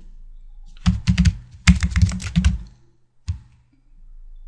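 Typing on a computer keyboard: two quick runs of keystrokes in the first half, then a single keystroke near the end.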